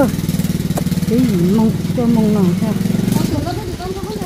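Small step-through motorcycle engine idling with a steady low putter under the talk; the engine sound drops away a little over three seconds in.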